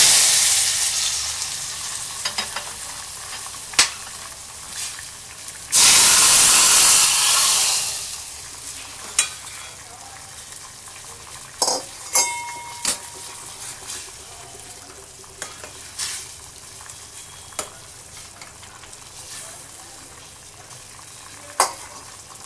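Hot oil tempering (popu) tipped from a small tadka ladle into a pot of hot dal, hissing loudly at first and fading over a few seconds. A second loud sizzle comes about six seconds in. After that a steel ladle stirs the dal with occasional clinks against the pot.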